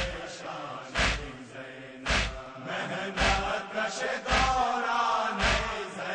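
A noha, a Shia lament, chanted by a voice over a steady beat of about one stroke a second.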